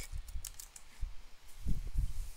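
Typing on a computer keyboard: a handful of scattered keystrokes with dull knocks, heaviest near the end.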